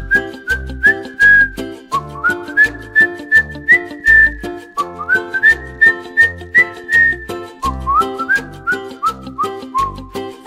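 Instrumental break of a children's song: a whistled tune carries the melody over bass and a steady beat, each phrase scooping up into its notes.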